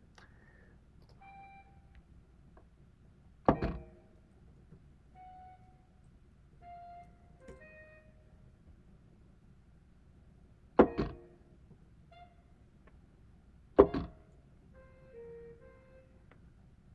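Short single notes from Sibelius notation software's playback sounding one at a time at different pitches as notes are entered into the score, with three loud thunks spread through the quiet.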